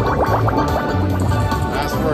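Video slot machine playing its free-games bonus music, a looping electronic tune over a repeating bass, while the reels spin. Near the end there is a rising swoosh.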